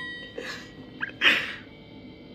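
A few sharp breathy exhalations from a young man, the loudest about a second and a quarter in, with a short click just before it.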